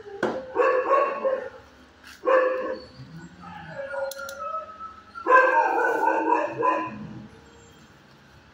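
Dog barking and howling in loud outbursts lasting up to a second or more, three in all, with a fainter rising-and-falling call in between.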